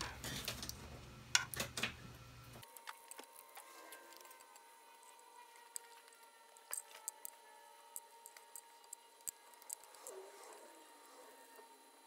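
Kapton tape being picked and peeled off a heatbed with a small pick: faint scattered clicks and crinkles, busier in the first couple of seconds.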